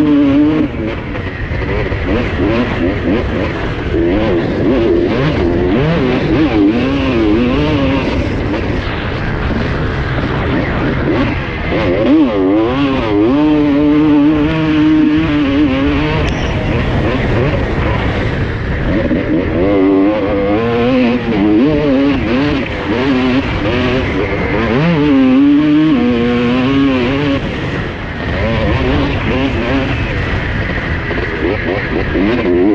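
Honda CR250R two-stroke single-cylinder motocross engine revving hard and falling off again and again as the bike is ridden through sand ruts, heard from onboard.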